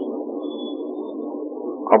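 Steady low hum and background noise of the lecture recording, with a faint warbling quality and no words, until a man's voice comes back in at the very end.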